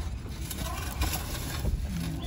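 Rope net rustling and scraping over dirt as the netted dog is handled and pulled, over a steady low rumble.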